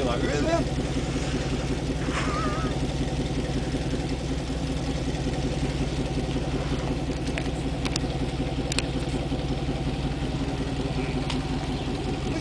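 Old Land Rover engine idling steadily, with a few faint clicks in the second half.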